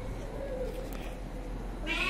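A domestic cat meows once near the end, after a quiet stretch.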